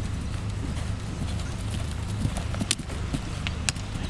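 Hooves of a showjumping horse cantering on turf, with a few sharp hoof thuds in the second half as the horse passes close by.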